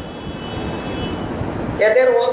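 Steady low background noise, with a man's voice starting again near the end.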